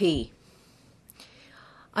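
A spoken word ending on a falling pitch, then a pause of faint room hiss lasting about a second and a half before speech starts again.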